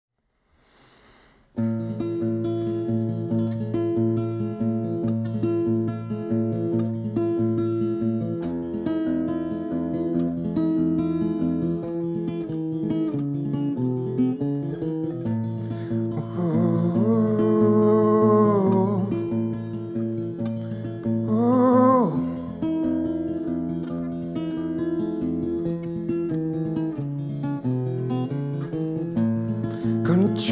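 Solo acoustic guitar playing a steady pattern over a regular pulse of low bass notes, coming in after about a second and a half of silence. A man's wordless vocal rises and falls for a few seconds around the middle, and again briefly a few seconds later.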